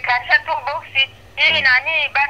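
Speech heard over a phone line, thin and without bass, with a steady low hum underneath.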